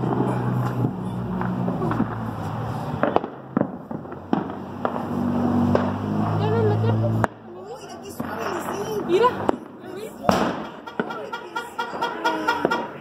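Fireworks and firecrackers banging at irregular intervals, some near and some far off, with the sharpest bang about ten seconds in. A low steady hum runs underneath for the first seven seconds and then cuts off suddenly.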